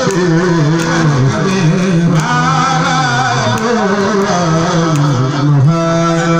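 Male voice chanting a khassaide, a Mouride devotional poem, into a microphone: one continuous line that slides and wavers between held notes.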